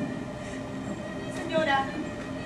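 A woman's wordless vocal cry through a stage microphone, a short falling cry about one and a half seconds in, over steady background tones.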